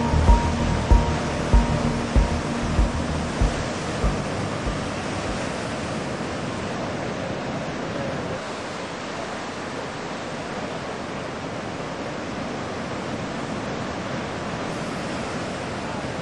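Background music with low beats fades out over the first few seconds, leaving a steady wash of ocean surf breaking on a beach.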